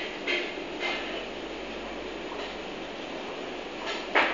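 Vegetable peeler scraping down a raw carrot, two quick strokes in the first second, over a steady background hiss.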